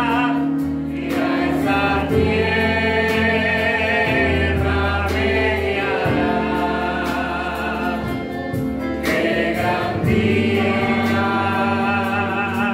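A man sings a Spanish-language Christian worship song into a microphone over amplified keyboard and electric guitar. He holds long notes with a wavering vibrato, pausing briefly for breath twice.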